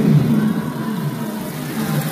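A live band's music trailing off at the end of a song, its last notes fading into the noise of the venue and crowd.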